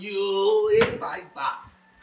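A man's voice holding one long, steady vocal note that rises slightly and breaks off just under a second in, followed by a few short vocal sounds.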